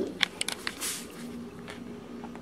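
Metal spoon clicking and scraping against a plastic bowl of mashed potato as a child stirs and scoops, a few light clicks in the first second.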